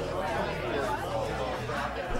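Bar-room chatter: many voices talking at once, none clearly heard, over faint background music.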